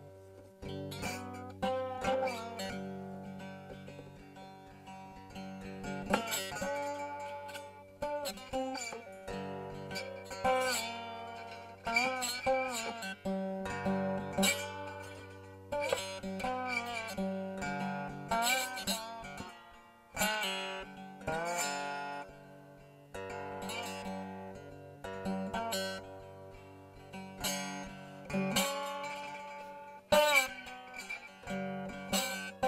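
Homemade three-string cigar box guitar played unamplified with a slide: plucked notes that glide up and down in pitch into one another, in a slow gospel melody.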